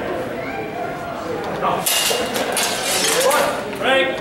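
Steel practice swords clashing in a fencing exchange: a quick run of sharp metallic clinks from about two seconds in, lasting about a second and a half, with voices calling out around them.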